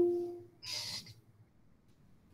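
A man's voice trailing off on a drawn-out, fading vowel, followed about half a second later by a short breathy hiss.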